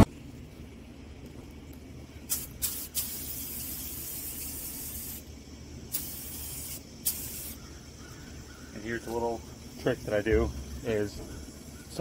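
Compressed-air gravity-feed paint spray gun hissing in bursts while spraying paint: a short burst about two seconds in, a longer one of about two seconds, and another from about six to seven and a half seconds. A man's voice is heard near the end.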